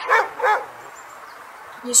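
A dog barking twice in quick succession, two short barks.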